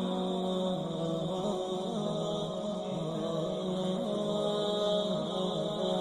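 Slow chant-like music with long held notes that slide slowly from one pitch to the next.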